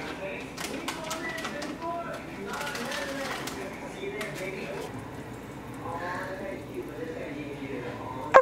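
Low talking with scattered light clicks and taps from handling dry instant ramen noodles in a stainless steel pot.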